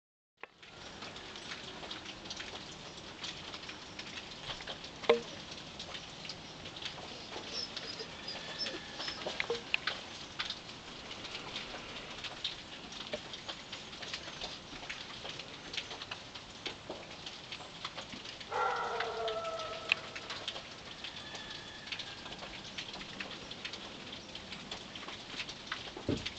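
Steady rain falling and dripping, a continuous patter of many small drops. A voice is heard briefly about three-quarters of the way through.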